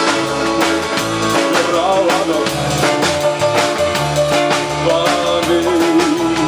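Live rock-and-roll band playing: a drum kit keeps a steady beat under electric and acoustic guitars, with long held guitar notes in the middle of the passage.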